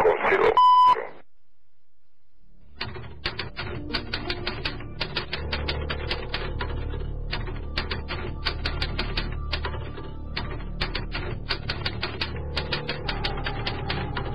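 A typewriter sound effect clacks in rapid, irregular keystrokes over a low, steady background music drone, starting about three seconds in. Just before it, at about half a second in, a short high steady bleep tone cuts off a voice on the phone recording, where the subtitle's swear word is left truncated.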